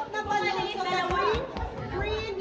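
Several people talking at once: general party chatter.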